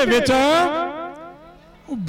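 Speech only: a man's voice through a microphone, delivered in a drawn-out, sing-song way with the pitch gliding up and down. It fades off about a second and a half in.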